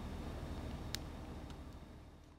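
Plastic cover being pushed over a wired electrical plug: one sharp click about halfway through and a fainter one later, over a low steady hum.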